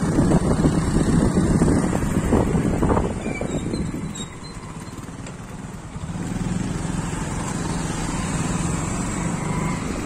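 Engine of a two-wheeler running in traffic, heard from the pillion seat. The sound is rough and loud for the first three seconds, drops off around the middle, then settles into a steady hum.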